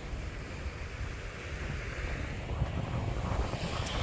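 Wind rumbling on the microphone over the steady wash of ocean surf.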